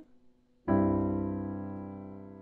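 A piano chord, an open-voiced C major, struck about two-thirds of a second in and left to ring, fading slowly.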